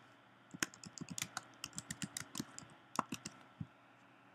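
Typing on a computer keyboard: a run of faint, uneven key clicks that stops shortly before the end.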